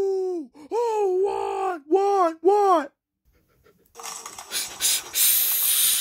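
A voice holding a long 'ooooo' cry that breaks off about half a second in, then three short wavering cries, then a second of silence. Near the end comes about two seconds of hissing noise.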